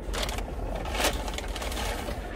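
Steady low hum inside a car cabin, with light handling noise and a faint click about a second in.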